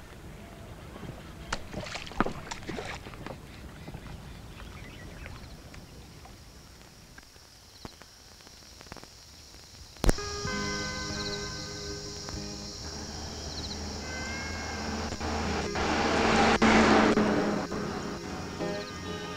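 Quiet ambience with a few soft knocks, then a sharp click about ten seconds in and a much louder steady car engine drone heard from inside the cabin, swelling near the end.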